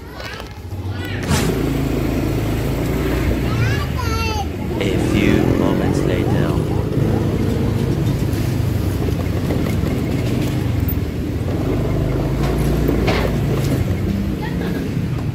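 Motor scooter engine running steadily under way, a low hum that comes in about a second in, with a few brief high chirps around four seconds in.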